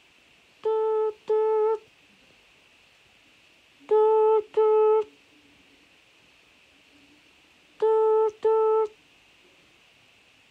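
Telephone ringback tone in the British double-ring pattern, "brr-brr", heard three times while a call waits to be answered. Each ring is a pair of short steady tones at the same pitch.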